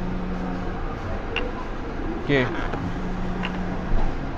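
A clear plastic display case being drawn out of a cardboard box, with two light clicks of handling. Underneath runs a steady low mechanical hum.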